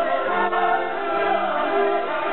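Operatic singing with orchestra: a high voice holding wavering notes with vibrato over sustained orchestral chords, sung in Turkish translation.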